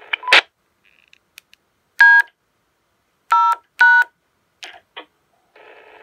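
Three short DTMF tone beeps sent from a Baofeng handheld radio: the digits D, 0 and # at about two, three and a half and four seconds in. Together they are the SvxLink macro command that disconnects the EchoLink module. A short burst of noise comes just after the start, and a steady hiss begins near the end.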